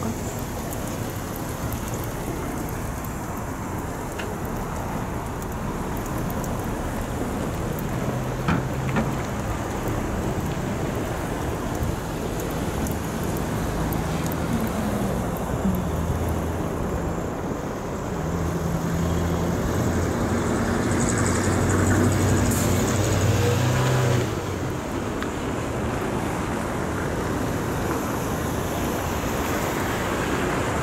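Car traffic on a snowy street: a low engine hum builds through the middle and drops off sharply about three-quarters of the way through, over a steady rushing noise.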